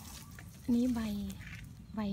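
Mostly speech: a woman speaks one short phrase in Thai, with a low steady rumble underneath.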